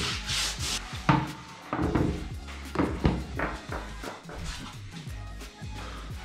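Hands rubbing over a wooden board, followed by a series of sharp knocks as motocross boots are handled and set down on it.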